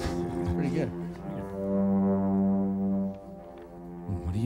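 Film-score music: a low, brass-like note held steady for about two seconds, after some shorter sliding tones.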